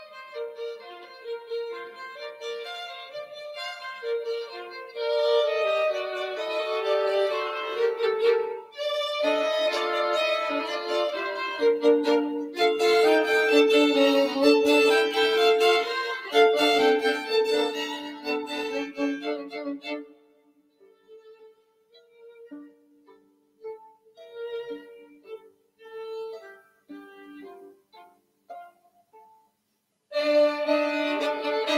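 Two violins playing a duet, a fuller passage with two brief breaks, then from about two-thirds through much quieter, with short, separate notes.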